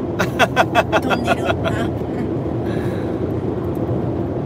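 A man laughing in a quick run of short bursts for about two seconds, over the steady road and engine noise inside a moving car's cabin.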